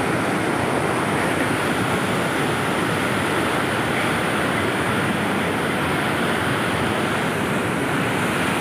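Whitewater mountain river rushing over boulders: a steady, loud wash of water noise that stays even throughout.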